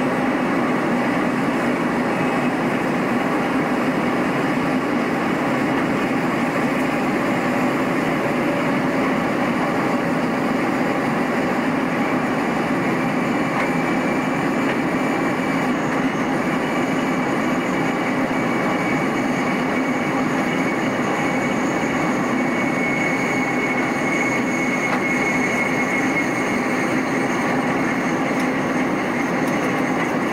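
Electric passenger train running at speed, its wheels rolling over the rails in a steady, even rush of noise. A faint high whine comes in about halfway through and fades before the end.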